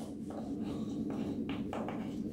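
Chalk writing on a chalkboard: several short scratchy strokes as letters are written, over a steady low hum.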